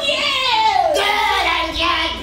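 A high, wordless voice calling out in one long note that slides down in pitch, followed by a few lower, shorter held notes.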